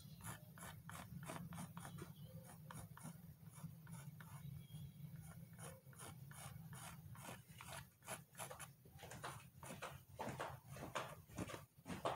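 Pencil-like sketching strokes scratching across black paper: short, irregular scrapes a few times a second, over a low steady hum.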